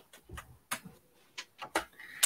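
Small plastic Lego pieces clicking and tapping as they are handled and fitted onto a plate: about half a dozen light, irregular clicks over two seconds.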